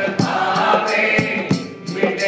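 A man singing a Hindu devotional aarti, accompanying himself on a harmonium, with a steady percussion beat of sharp strikes about twice a second. The music eases briefly just before the end.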